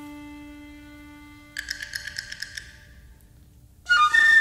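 Contemporary chamber music: a held string note fades away, then a quick run of bright, clicking percussion strikes sounds about a second and a half in. A loud flute note enters right at the end.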